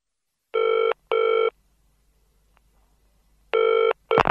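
Telephone ringing in the classic double-ring pattern: two short rings close together, a pause of about two seconds, then the next ring begins near the end.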